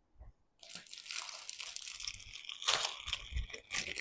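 Clear plastic packaging crinkling and rustling as a saree packed in it is picked up and handled, starting about a second in, with sharper crackles near the end.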